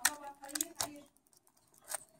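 A few sharp clicks of plastic and metal laptop parts being handled while a motherboard and its ribbon cable are fitted back into the case, about four clicks spread unevenly.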